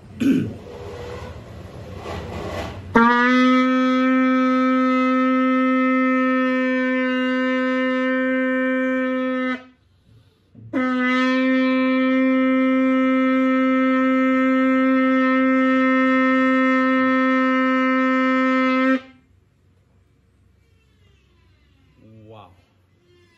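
Sable antelope horn shofar blown in two long, steady held blasts at the same pitch, each rich in overtones, with a short break between them. A few seconds of breathy noise come before the first blast.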